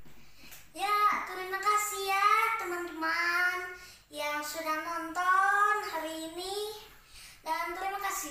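A young boy singing unaccompanied in three drawn-out, wavering phrases.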